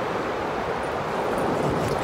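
Steady rush of wind buffeting the microphone, with surf washing on the beach behind it.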